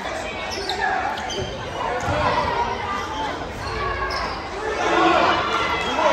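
Basketball dribbled on a hardwood gym floor during play, with players' and spectators' voices echoing in the large hall.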